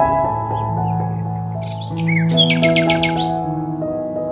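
Soft background music of sustained, slowly changing chords, with small birds chirping over it and a fast twittering trill a little past halfway.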